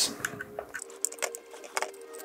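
A few light clicks and taps of metal and acrylic parts being handled on a wooden tabletop, as gloved hands work at the terminal of a GPU water block.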